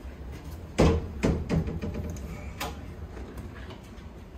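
A door being unlocked and opened by its lever handle: a sharp clack about a second in, a second knock just after, then a few lighter latch clicks.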